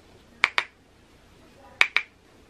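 Two quick double clicks about a second and a half apart: a makeup brush tapped against the edge of a plastic powder-foundation compact.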